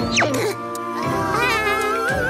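Cartoon sound effects over background music: a quick, steeply falling whistle just after the start, then a wavering, warbling pitched tone from about a second in.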